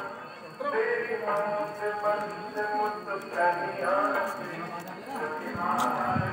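A voice, or voices, singing long held notes at moderate level, heard at some distance.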